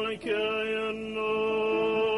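A male cantor singing in cantorial style: a brief break just after the start, then one long held note with vibrato.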